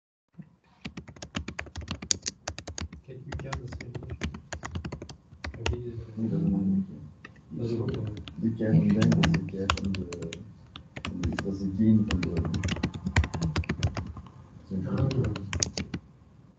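Typing on a computer keyboard, with keystrokes in quick runs. Indistinct talking overlaps it from about three seconds in.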